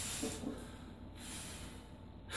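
A weightlifter's forceful breaths while bracing under a heavy loaded barbell before a squat: a breath at the start and another, sharper hiss of breath about a second and a quarter in.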